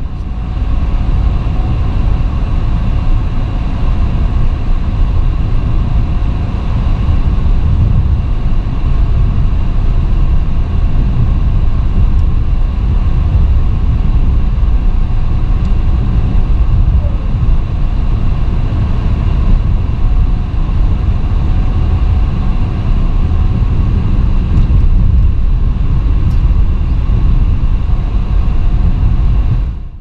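Steady low rumble of road and engine noise heard from inside a moving car's cabin. It fades out sharply at the very end.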